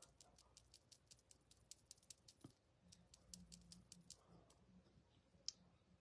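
Near silence with faint, rapid high-pitched clicking, several clicks a second, and one sharper click about five and a half seconds in.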